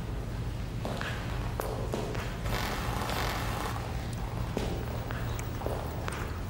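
Footsteps on a hard floor, irregular steps roughly every half second to a second, over a steady low hum.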